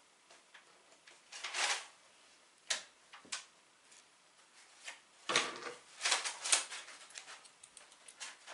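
Scattered light clicks and rustles of hand crafting at a table: beads, a needle and scissors handled while beading a crochet hat. A rustle comes about a second and a half in, two sharp clicks follow around the three-second mark, and a cluster of clicks and knocks comes after the five-second mark.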